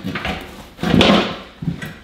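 A cut Nitto NT01 tire being wrenched off a wheel rim by hand: rubber scraping and rubbing against the rim in a few short bursts, the loudest a long scrape about a second in.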